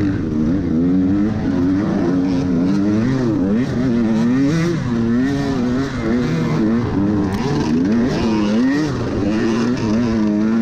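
Off-road dirt bike engine heard from its own handlebars, revs rising and falling every second or so as the throttle is worked at low speed up a rutted woods trail. Light scattered clicks and clatter run over the engine.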